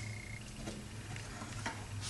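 A few faint clicks and light taps, spaced out, as a small wooden item is taken off a wooden shelf and handled, over a low steady hum.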